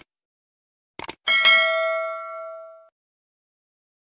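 Two quick click sound effects, then a single bell ding that rings out and fades over about a second and a half: the typical subscribe-button and notification-bell sound effect.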